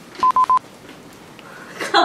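Three quick electronic beeps, all on the same steady pitch, in a rapid burst about a quarter-second in; a woman's voice comes in near the end.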